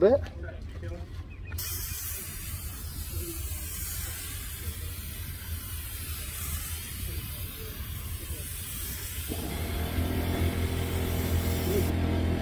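Gravity-feed spray gun hissing steadily as compressed air sprays coating onto a boat hull, starting abruptly a couple of seconds in and stopping just before the end. A low, steady engine drone joins about nine seconds in.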